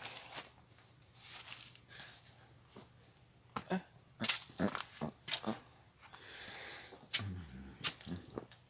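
Footsteps and camera-handling knocks, a few sharp clicks in the middle and near the end, over a steady high-pitched drone of insects.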